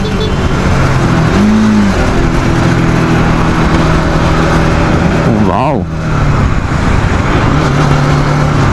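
Motorcycle engine running steadily under way in traffic, under loud road and wind noise. A short tone sounds about a second and a half in, and a brief wavering pitched sound comes about halfway through.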